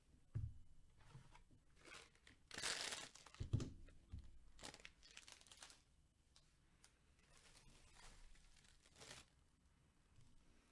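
Trading-card packaging being handled: irregular bursts of crinkling and rustling wrapper material, longest around the middle, with a couple of soft thumps as cards and boxes are set down.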